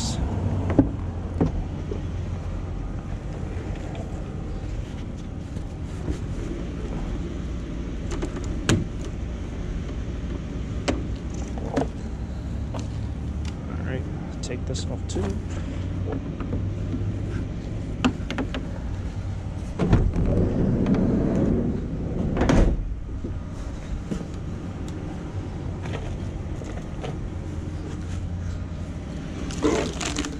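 Plastic power cords and a flexible exhaust hose of a discarded portable air conditioner being handled and clipped, giving scattered clicks and a louder rustling stretch about twenty seconds in, over a steady low hum like an idling engine.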